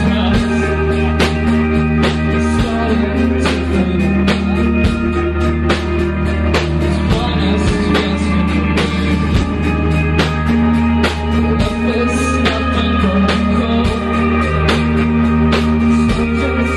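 Indie rock band playing live: sustained electric guitars and a steady bass line over regular drum hits.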